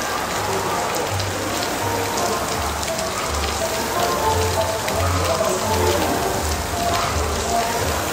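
Steady hiss of rain falling on a roof, with faint background music.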